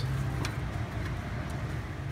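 Steady low background hum with faint noise, and a single faint tick about half a second in.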